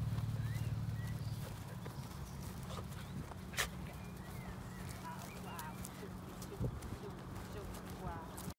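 Outdoor ambience of small birds chirping and trilling over a low steady rumble, with one sharp click a little past halfway.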